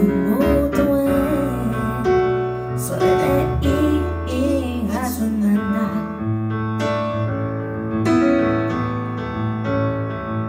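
A woman singing a slow song over piano or keyboard accompaniment, with long held chords.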